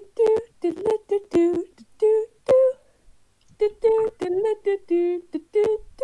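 A voice humming and vocalising a simple piano tune in short, separate notes, imitating piano playing. There is a short pause about halfway through.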